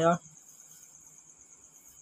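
A spoken word cuts off at the start, then a faint, steady high-pitched trill over quiet room sound.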